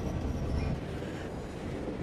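Metro train running, heard from inside the carriage: a low rumble of wheels on the rails.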